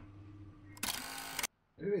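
Quiet room tone, then about a second in a loud burst of hissing, clicky noise lasting about half a second. It cuts off into a moment of dead silence: an editing transition sound laid over a cut.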